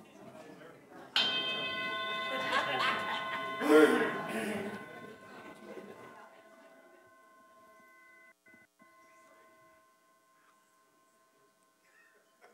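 A bell struck about a second in, its clear ringing tone dying away slowly over several seconds.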